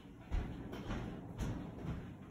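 A person moving about as she gets up and leaves, with low thuds and knocks, two heavier ones about a third of a second in and again about one and a half seconds in.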